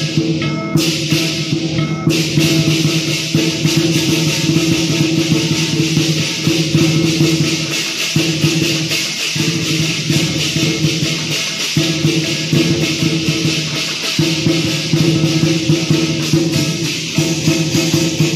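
Chinese lion dance percussion ensemble of drum, cymbals and gong playing a loud, fast, dense rhythm, with brief breaks in the low ringing tone a few times.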